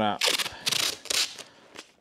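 Blue painter's tape being pulled off its roll in a few quick crackling pulls.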